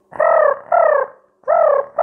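A performer's voice making a sock puppet cough: three short, pitched 'oof' coughs, each falling in pitch, with a fourth starting at the very end. It is a play-acted cough showing the puppet is poorly.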